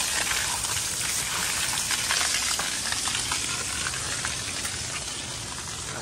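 A steady hiss of rushing water, easing off slightly toward the end, with faint ticks over it.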